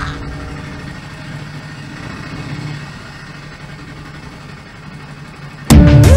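A vehicle's engine running steadily, a low hum heard from inside the cabin. About five and a half seconds in, loud bass-heavy electronic music cuts in abruptly.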